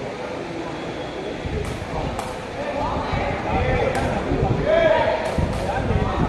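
Crowd of spectators talking and calling out in a large hall, louder from about a second and a half in, with a few sharp smacks of a sepak takraw ball being kicked during a rally.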